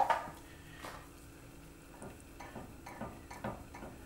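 Gravy simmering in a saucepan on the stove: faint, scattered small pops and ticks, a few more of them in the second half.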